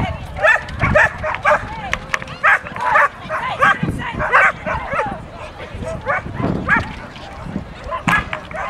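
A dog barking over and over in short, sharp, high barks, about a dozen of them at uneven intervals, with voices in the background.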